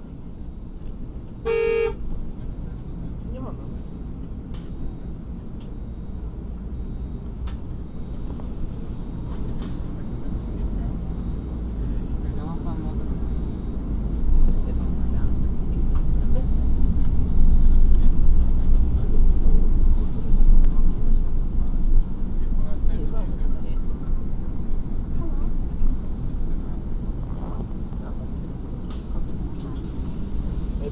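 Low rumble of a city bus driving, heard from inside, with a single short horn toot about two seconds in. The rumble grows louder through the middle as the bus gets under way, then settles again.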